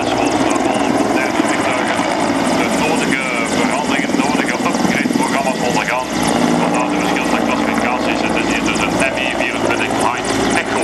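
Mil Mi-24 Hind attack helicopter flying past, its twin Isotov TV3-117 turboshaft engines and five-blade main rotor running with a fast steady beat of the blades. Its pitch sweeps as it banks past, about halfway through.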